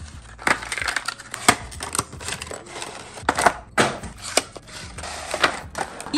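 Clear plastic blister packaging and cardboard boxes of makeup brushes crackling and clicking as the brushes are pulled out, an irregular run of crinkles with several sharp snaps.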